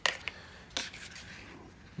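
A few light clicks and taps of a Glock pistol and a Kydex trigger guard holster being handled and picked up: one at the start and another just under a second in, otherwise quiet.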